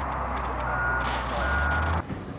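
A vehicle's reverse alarm beeping twice over the steady low rumble of its running engine.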